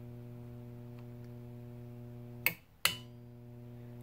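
Large mains transformer humming steadily while energised, a low hum with a stack of overtones. A click about two and a half seconds in cuts the hum. Another click a moment later brings it back, quieter.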